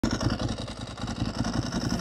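Ducati 1098S's L-twin engine running while the bike is ridden, a low, rapidly pulsing exhaust note that swells and dips.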